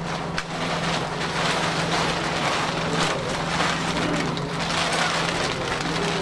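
Plastic sheeting and a silver body bag crinkling and rustling continuously as they are handled and pulled over a body, with a steady low hum underneath.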